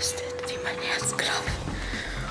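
A woman whispering, with quiet background music underneath.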